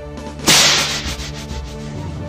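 A whip-crack sound effect, sudden and loud about half a second in, with a noisy tail that fades over about a second.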